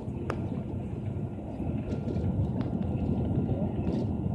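Steady low rumble of a tour bus's engine and road noise, heard from inside the cabin while the bus drives along a mountain road, with a few light clicks or rattles.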